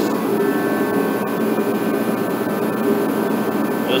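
Craftsman torpedo-style kerosene heater running: the steady rushing drone of its fan-forced burner, with a faint steady whine above it.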